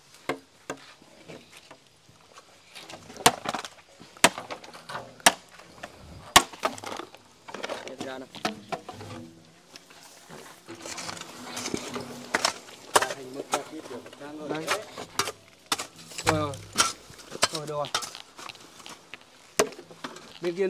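Corrugated metal roofing sheets knocking and clattering as they are lifted and stacked, an irregular series of sharp knocks, with brief voices in between.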